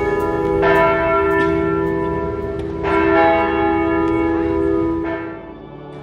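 A church bell struck twice, about two seconds apart, each stroke ringing on with a long, steady hum that fades away near the end.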